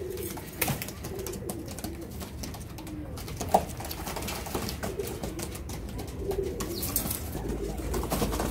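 Domestic pigeons cooing in a coop: low, repeated warbling coos from several birds. A single sharp click comes about three and a half seconds in, and a low rumble starts near the end.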